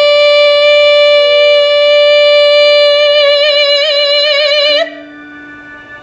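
A young woman's singing voice holding one long high final note over an instrumental accompaniment. The vibrato widens about three seconds in, and the voice cuts off just before five seconds, leaving the accompaniment playing softly.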